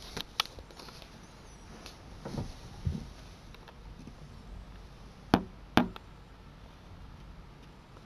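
A few short, sharp clicks and knocks over a faint background: small clicks near the start, two duller thumps around two and a half and three seconds in, and two loud sharp clicks about half a second apart a little past five seconds in.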